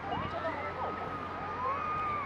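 High-pitched children's voices calling out in long, drawn-out cries that glide up and down in pitch, over the general murmur of a hall.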